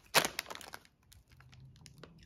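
Plastic shopping bags and packaging crinkling as a mesh bag of rubber bath toys is handled over them: one sharp rustle right at the start, then a few light crackles that die away within about a second.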